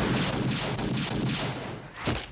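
Loud action sound effects from a film soundtrack: a dense rumble shot through with a rapid run of heavy impacts, fading toward the end.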